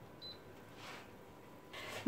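Touch control of a glass-top electric hob giving one short, high beep a quarter second in as the heat setting is pressed, followed by a faint soft noise about a second in.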